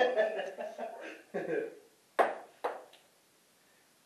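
A shouted word and a short vocal sound, then two sharp taps about half a second apart, a ping-pong ball bouncing on a hard surface.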